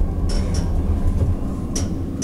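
Steady low rumble inside a Schindler 330A hydraulic elevator cab as it travels down, with a few brief faint hisses.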